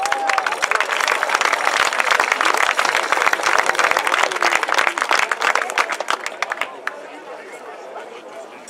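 Audience applauding with dense clapping that thins out and fades about seven seconds in.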